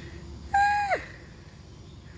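A single short bird call, about half a second long: a clear, steady note that drops in pitch at the end.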